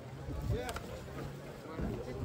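Indistinct voices of people talking nearby over a steady low hum.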